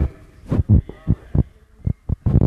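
A run of irregular low, dull thumps, about five in a second and a half.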